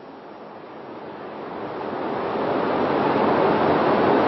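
A broad rushing noise with no tone in it, swelling steadily louder over about three seconds and then holding.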